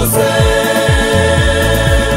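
Gospel choir singing in harmony over recorded backing music with a repeating bass beat.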